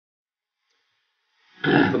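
Silence, then about a second and a half in a man's voice cuts in loudly, clearing his throat and starting to speak.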